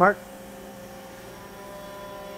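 Steady machinery hum with several faint steady whining tones from the running equipment of a CNC lathe robot cell, growing slightly louder near the end.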